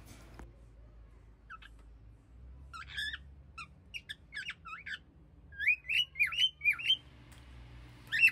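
Cockatiels chirping: scattered short chirps, then a louder run of quick whistled notes that rise and fall, about two-thirds of the way through.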